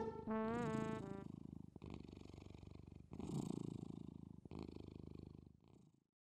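Low purring in three long breaths, each fading out, a cartoon tiger's purr sound effect. A short wavering musical note ends about a second in, before the purring starts.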